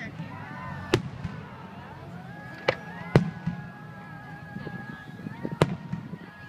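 Aerial fireworks shells bursting: four sharp bangs, about a second in, two close together near the middle, and one near the end, over background voices.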